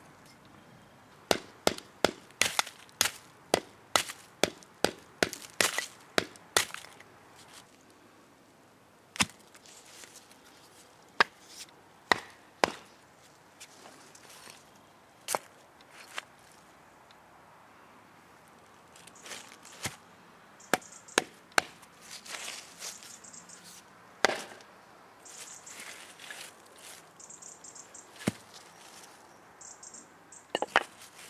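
Tungsten tip of a metal survival baton striking brick and stone. A quick run of sharp knocks, about three a second, lasts about five seconds, then single knocks come every few seconds. Lighter clicks and rustling follow near the end as the broken pieces are handled.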